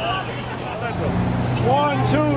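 Several people's voices calling out and talking over city street traffic. A steady low hum comes in about half a second in and grows.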